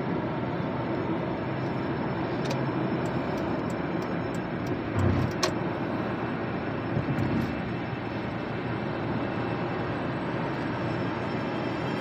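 Steady road and engine noise inside a car's cabin while driving on a highway, with a few faint clicks and a couple of brief knocks around the middle.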